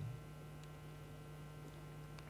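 Faint, steady electrical hum: a low mains-type hum with a few thin higher tones over it, unchanging throughout.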